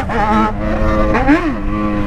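Yamaha XJ6's 600 cc inline-four engine running at a steady cruising speed, heard from the rider's seat, with a brief rise and fall in pitch about halfway through.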